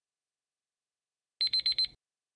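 Digital countdown-timer alarm: a quick run of about four short, high-pitched electronic beeps starting about a second and a half in, signalling that the timer has run out.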